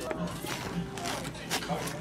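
Plastic toy accordion being squeezed and handled: a few clicks from the plastic bellows and keys, with only faint, weak notes, as the toy barely plays.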